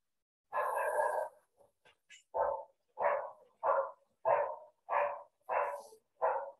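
A dog barking: one longer sound about half a second in, then six short barks in an even rhythm, a little over half a second apart.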